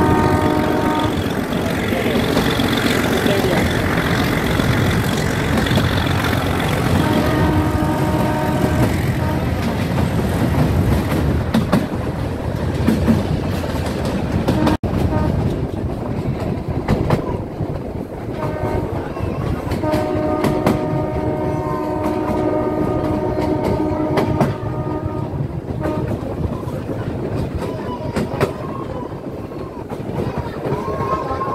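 Metre-gauge passenger train running at speed, heard from an open coach doorway: the coaches rumble and the wheels clatter over the rail joints, while the YDM-4 diesel locomotive ahead sounds its horn three times. The first blast is brief, the second lasts about two seconds a few seconds later, and the third is a long blast of about six seconds past the middle.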